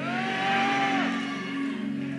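Soft background keyboard music of sustained low chords under a pause in the preaching, with a higher note held for about the first second.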